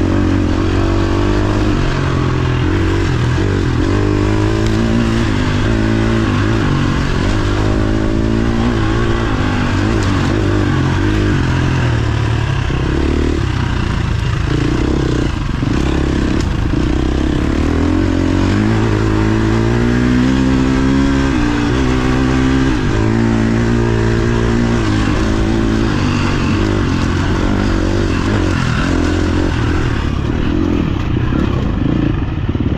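Dirt bike engine being ridden hard, its pitch rising and falling over and over with throttle and gear changes.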